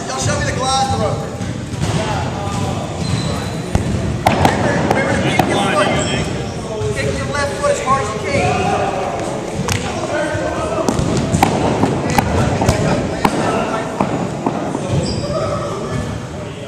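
Indistinct chatter of several people echoing in a large gymnasium, with sharp, irregular thuds of balls bouncing on the hardwood floor from about four seconds in.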